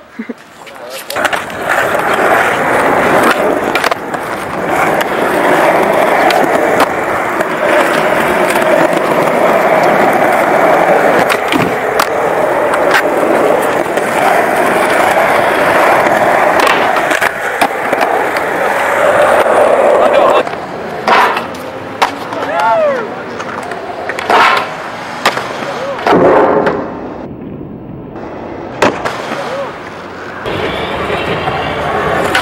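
Skateboard wheels rolling loudly on rough concrete, a continuous rush for most of the first twenty seconds. In the later part come several sharp clacks of a board hitting the ground.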